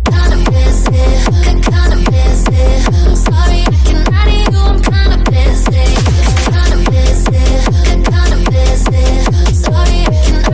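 A hard techno drop: a loud kick drum falling in pitch on every beat drives a fast, steady beat, with synth notes above. It comes in suddenly after a brief break.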